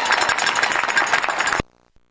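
Crowd applauding at the close of a marching band show, a dense patter of many hands clapping. The sound cuts off abruptly about a second and a half in as the recording ends.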